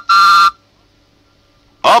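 Postman's whistle tooting twice in short two-note blasts, the second ending about half a second in: the read-along record's signal to turn the page.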